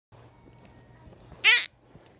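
A young child's short, loud, high-pitched squeal, about one and a half seconds in.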